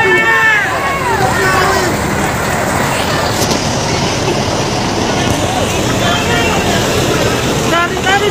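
A crowd of people shouting and talking over one another, with raised voices clearest in the first two seconds and again near the end, over a steady din of vehicle noise.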